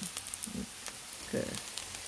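Kimchi pancakes (kimchi jeon) frying in oil in a nonstick pan: a steady sizzle with scattered small crackling pops.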